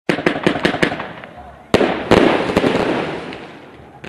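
Fireworks: a quick string of five sharp bangs in the first second, then a louder bang a little before the middle and a dense crackling that slowly fades away.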